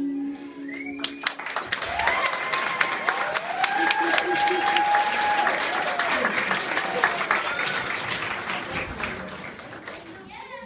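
A held musical note stops about a second in, and an audience breaks into applause with a few cheering voices; the clapping fades toward the end.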